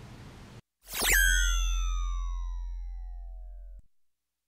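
Synthesized transition sound effect: a sudden bright sweep that drops quickly, then several tones gliding slowly downward together over a low steady hum, fading for about three seconds before cutting off just before the end.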